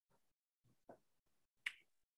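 Near silence of a video-call line, with faint background noise cutting in and out, a soft knock about a second in, and one sharp click near the end.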